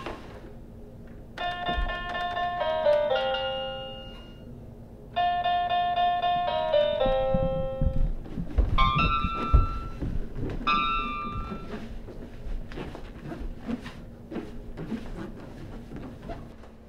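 Toy electronic keytar tones: two runs of stepped notes falling in pitch, then a few short clusters of notes. After that come irregular thumps and knocks.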